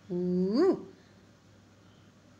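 A single vowel spoken aloud and drawn out for under a second, first held level, then swinging up and back down in pitch at the end, as a letter of the Malayalam alphabet is pronounced.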